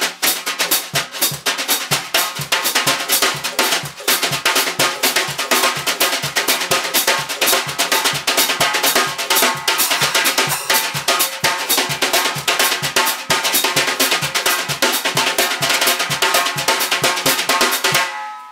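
Small acoustic drum kit played with jazz brushes in a steady, continuous groove: quick strokes on a PDP birch snare and Sabian SR2 hi-hats over regular low kick beats from a cajon. This is the soft, low-volume sound meant for an acoustic setup.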